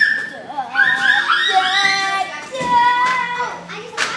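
Children's high-pitched voices shouting and calling out, some calls drawn out for about a second.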